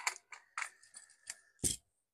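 Light clicks and snips of side cutters trimming soldered component leads on a circuit board, with a sharper click a little past halfway.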